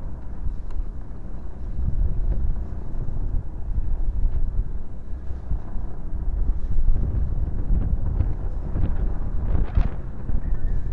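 Wind buffeting the microphone: a steady, rough low rumble.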